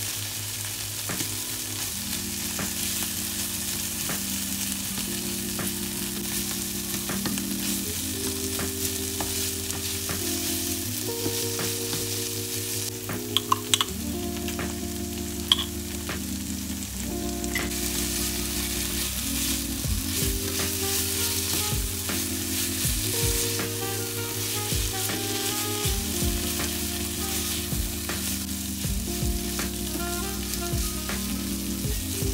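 Jackfruit pieces sizzling as they fry in a non-stick pan, stirred and scraped with a spatula, with a few sharp utensil clicks about halfway through. Soft background music with slow chord changes plays underneath.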